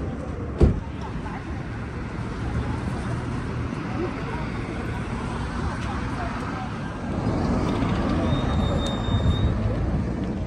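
Busy town-street ambience: a steady rumble of road traffic with people's voices in the background. There is one sharp knock about half a second in, and a short high beep near the end.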